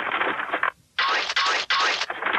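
Rapid clattering of wooden mallets striking chisels and stone in two busy bursts, with a short break just before the middle.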